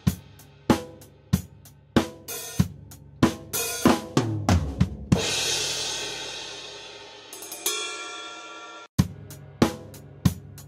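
Recorded drum kit heard through its overhead microphones, playing a steady beat of hits with cymbals, and a long crash ringing out from about five seconds in. The overheads are run through a 1176-style FET compressor at a 12:1 ratio. The playback stops abruptly near the end and starts again.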